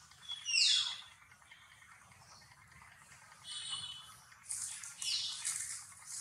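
High-pitched animal calls: a loud squeal falling steeply in pitch about half a second in, a short buzzy call about three and a half seconds in, and a run of falling squeals near the end.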